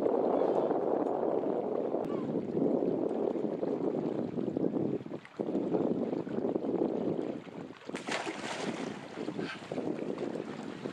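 Wind buffeting the microphone in a steady low rush. From about eight seconds in a brighter hissing splash joins it as a person wades into shallow sea water off a rock.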